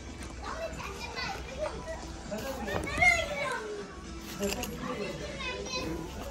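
Children's voices talking and calling out, indistinct, with one louder high call about three seconds in.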